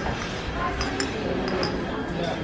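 Glassware clinking: a few light, ringing chinks as glasses knock against each other while being handled, over a background murmur of voices.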